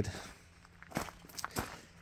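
A few separate, faint footsteps on gravel.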